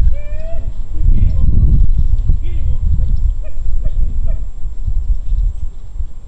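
Hunting hounds baying on a rabbit's trail: a string of short pitched cries that rise and fall, coming mostly in the first two-thirds, over a loud low rumble.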